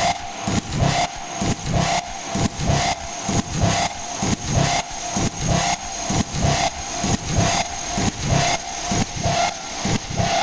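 Beatless industrial techno track: a distorted, rasping noise loop pulsing about twice a second over a steady held synth tone, with no kick drum.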